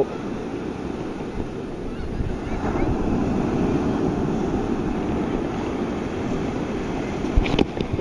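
Ocean surf washing steadily, with wind noise on the microphone. A couple of sharp clicks near the end.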